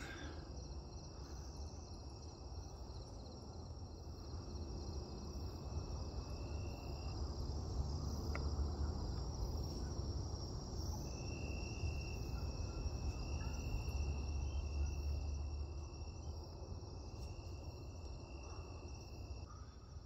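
Night insects trilling steadily in a high-pitched chorus. A second, lower steady trill stops for a few seconds in the middle and then resumes. All of it sits over a low rumble.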